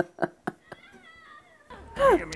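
A woman's laughter: short pitched laugh pulses that trail off about half a second in, followed by faint wavering high tones.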